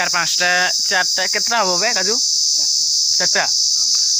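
Insects in the trees droning in a steady high-pitched chorus without a break.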